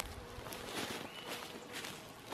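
Faint rustling and light knocks of a leather rifle sling, clothing and a scoped rifle being handled as it is raised to the shoulder into a braced hold, with feet shifting on grass.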